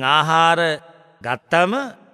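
A Buddhist monk's male voice chanting a verse in the drawn-out, melodic intonation of a sermon: long held phrases with a wavering pitch, broken by a short pause about a second in.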